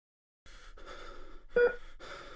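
Faint steady room hum with a few fixed tones, broken about one and a half seconds in by a short, loud human vocal sound.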